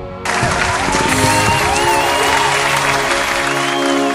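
Background music with a burst of applause and cheering laid over it, starting about a quarter second in.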